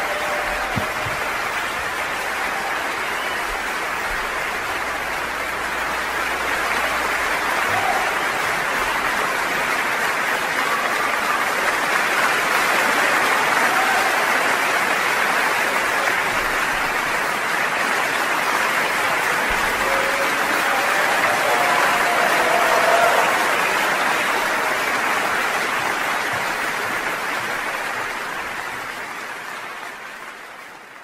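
Audience applauding steadily, swelling a little midway and fading out near the end.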